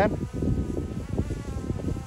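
Small quadcopter drone hovering, a steady buzzing whine of several pitches over low wind rumble on the microphone.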